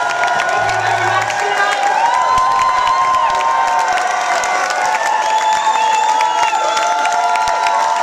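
Audience cheering, whooping and clapping at the end of a song in a live rock-club gig.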